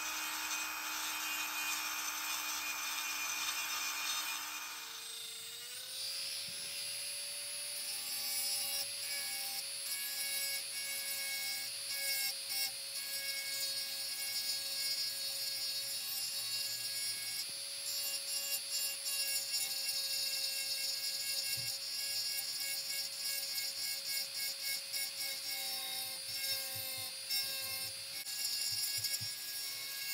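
High-speed rotary tool with a small pointed bit running and grinding into the broken wooden horn of a plane tote, a steady whine over a rough cutting noise. The whine steps up to a higher pitch about five seconds in and holds there, with short irregular grinding scrapes as the bit bites the wood.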